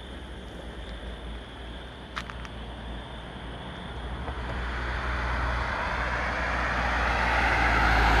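A car approaching along the road, its engine and tyre noise building steadily over the second half and loudest near the end as it draws close. A brief click sounds about two seconds in.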